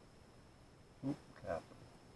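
A man's short exclamation, 'oop', as two quick voiced syllables about a second in, over a faint steady background hum.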